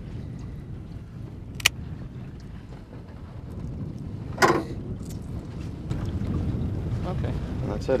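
Steady low rumble of a small open boat on the water, growing a little louder near the end, with a single sharp click about a second and a half in and a brief voice near the middle.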